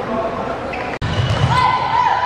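Balls bouncing on the floor of an indoor sports hall amid voices. The sound breaks off for an instant about halfway through, then comes back louder with heavier low thuds.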